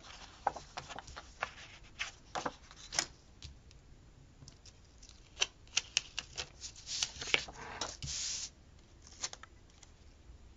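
Paper cards and sticker sheets handled and slid over a desk: scattered light taps, clicks and rustles, with one longer papery rasp about eight seconds in.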